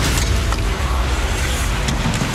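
Steady crowd din in an ice hockey arena during live play, with a few sharp clacks on the ice.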